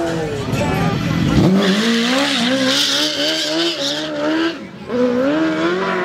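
A car doing a burnout: the engine held at high revs with the tyres squealing against the road, the pitch wavering. A rush of tyre noise swells about a second in and again in the middle.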